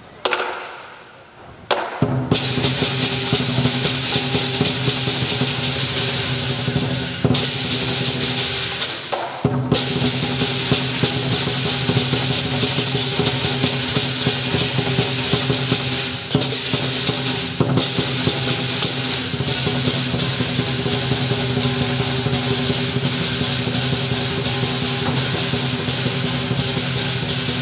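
Southern lion dance percussion: the big lion drum with clashing cymbals and a gong. One strike rings away at the start, then loud continuous playing from about two seconds in, with a short break about nine seconds in.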